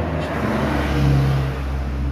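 A motor vehicle's engine, swelling to its loudest a little past a second in and then easing off.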